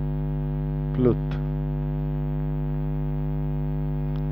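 Steady electrical mains hum with many overtones, unchanging throughout, with a brief vocal sound about a second in.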